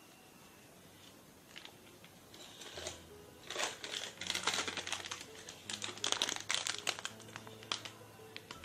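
Plastic spice packet crinkling and rustling as it is handled, starting about three seconds in and going on in irregular bursts.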